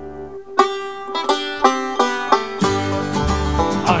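Instrumental intro of an Irish folk ballad. A held drone chord fades out, then a plucked string instrument starts picking a bright melody about half a second in. Bass and fuller backing come in under it a little past halfway.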